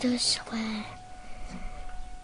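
A child speaking a few words in the first second, with sharp hissing consonants, then quiet room sound.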